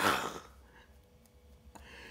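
A man's hoarse cry of pain as the set wax is pulled off his face, falling away within the first half second. A short breath follows near the end.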